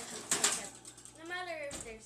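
A metal oven rack and a foil-lined baking tray rattle and scrape as the tray slides on the rack, in a quick cluster of clicks in the first half second. The oven door shuts with a low thump near the end.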